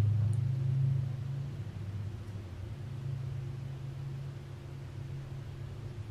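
A low, steady hum that fades over the first couple of seconds and then holds faintly.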